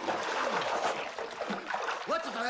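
Bathwater splashing and sloshing as a person thrashes about in a full bathtub.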